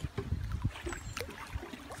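Pool water sloshing and lapping around a person standing in a swimming pool and handling a foam float, over a low rumble.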